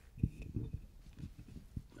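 Microphone handling noise: a series of low bumps and knocks, the strongest about a quarter second in, as the microphone is moved about.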